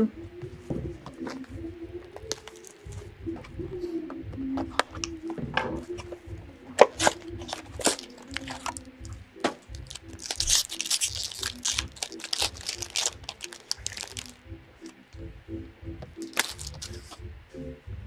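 Plastic wrapping on a box and pack of hockey cards crinkling and tearing as they are opened, with light clicks and handling noises. The loudest stretch, a dense crinkle, comes from about ten to fourteen seconds in. Faint background music plays underneath.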